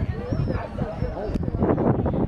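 A dog giving a few short calls in the first second, over people talking.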